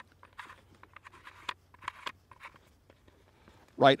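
Faint scratchy rubbing and small clicks of a threaded port cover being screwed into the front port of a Parcil full-face gas mask. The sounds come as a few short ticks and scrapes over the first couple of seconds. A man's voice comes in near the end.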